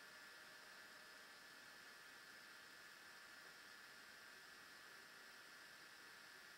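Near silence: a faint, steady hiss of microphone noise.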